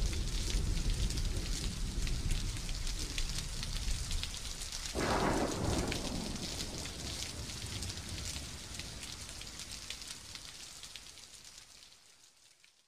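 Dense crackling hiss over a low rumble, with one louder rumbling swell about five seconds in, the whole fading out gradually to silence.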